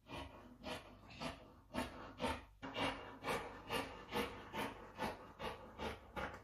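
Sewing scissors snipping through fabric in a steady run of cuts, about two snips a second.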